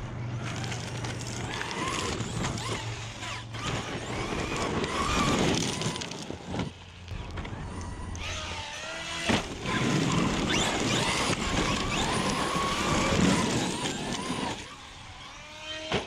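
Traxxas XRT 8S electric RC truck running hard: the motor's whine rises and falls with the throttle over the noise of tyres on gravel and dirt, with a few sharp knocks from landings.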